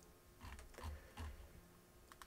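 Near silence with three faint, short clicks from computer use, typical of a mouse or keyboard at the desk.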